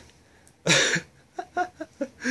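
A man's short laugh: one sharp, breathy huff about two-thirds of a second in, then a few soft chuckles.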